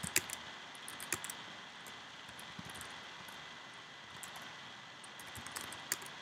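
Computer keyboard keystrokes in scattered short runs of clicks, over a steady low hiss.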